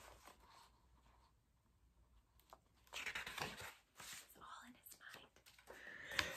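Near silence, with faint rustling of paper picture-book pages being handled and turned from about three seconds in.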